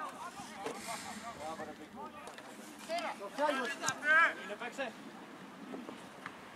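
Voices calling and shouting across a football pitch during play, the loudest call about four seconds in.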